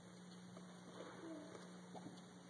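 Near silence: room tone with a steady low hum and a few faint, brief sounds about a second in.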